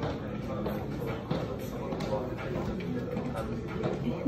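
Room noise with faint, indistinct voices in the background.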